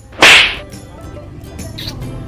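A single loud, sharp swish about a quarter second in, dying away within half a second, like a whip-swish sound effect, over faint steady background tones.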